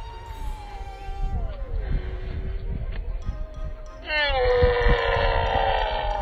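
A woman lets out a loud, long straining cry as she heaves a heavy pumpkin, starting about four seconds in, over background music.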